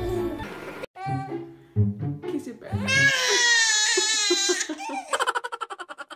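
A baby's long, high, wavering cry lasting about a second and a half, followed near the end by a burst of quick giggling.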